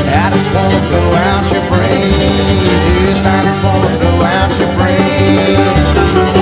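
Bluegrass band playing an instrumental passage: fast-picked acoustic guitar and banjo over an upright bass line.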